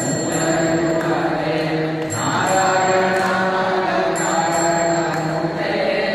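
Devotional mantra chanting in a slow melody, each note held for a second or two before moving to the next.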